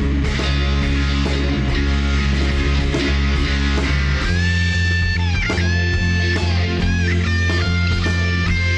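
Rock band of electric guitars and bass guitar playing a song. The first half is dense strummed chords over a steady bass. About four seconds in, a lead line of long held notes with bends takes over above the bass.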